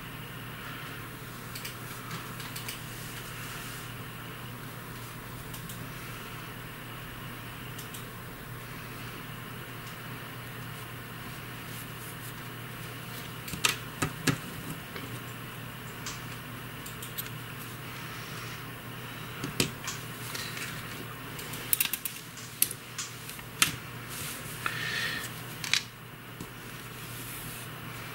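Steady low hum with scattered light clicks and rustles of hands working a knitted shawl with a darning needle and scissors while weaving in yarn ends. The clicks come mostly in the second half.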